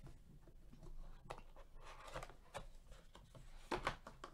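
Cardboard trading-card master box being opened and the mini-boxes inside handled: faint rubbing and sliding of cardboard with a few soft knocks, the loudest near the end.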